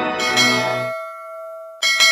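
Two struck bell tones about a second and a half apart, each ringing on and slowly fading. Organ music plays under the first and cuts off abruptly about a second in.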